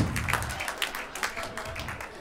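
Theatre audience applauding, the clapping fading away over a couple of seconds.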